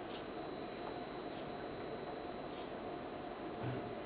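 Small hobby servo motors of a robot arm: a faint steady high whine with four brief high-pitched chirps, about one every 1.25 seconds, as the arm steps between commanded positions.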